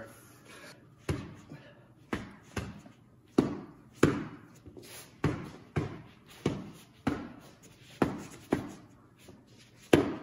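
Hayabusa T3 boxing gloves landing body punches on a person's torso: about a dozen dull thuds, one or two a second, in an uneven rhythm.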